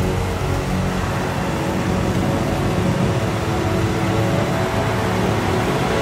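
McCormick X7.624 tractor's six-cylinder diesel engine running steadily under load while pulling a round baler, mixed with background music.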